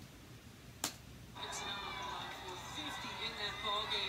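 A single click, then the TV broadcast of a basketball game comes in about a second and a half in: commentator speech over arena sound, with short high squeaks from the court and a steady high tone.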